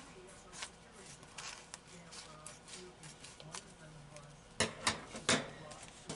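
Scissors cutting a length of plastic vacuum-sealer bag from the roll: faint snips and crinkling of the plastic, then three sharp clicks near the end.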